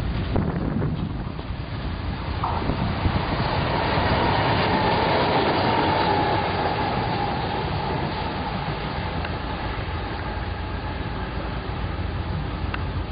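Trenitalia E.464 electric locomotive running along the track, a steady rumble of wheels on rail with a faint motor whine that slides slightly lower in pitch midway.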